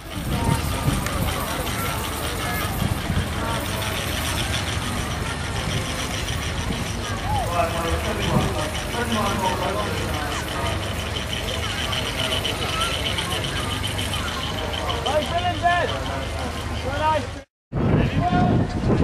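Miniature steam traction engine running as it is driven across grass, with people talking nearby.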